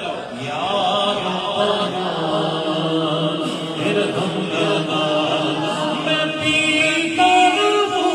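A man's voice chanting a naat into a microphone, sung without instruments in long, wavering held notes.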